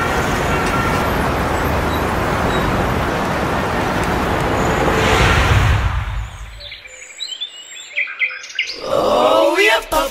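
Steady road-traffic noise that swells twice, then a quieter lull with a few short bird chirps, and voices singing starting near the end.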